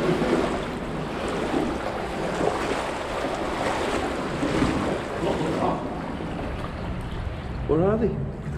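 Shallow water sloshing and splashing as someone wades through a flooded concrete river culvert. There is a short laugh at the start and a brief voice near the end.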